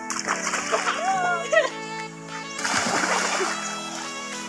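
A child jumping into a swimming pool: a splash of water about two and a half seconds in, over background music and children's voices.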